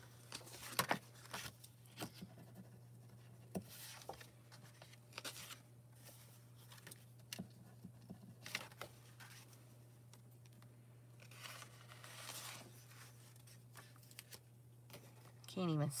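Faint rustling and sliding of sheets of paper being handled and shuffled, with short scratches and taps of a pen writing on the back of the sheets, over a steady low hum.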